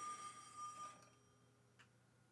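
A faint high steady ringing tone, with fainter overtones above it, fading away about a second in; a faint click near the end.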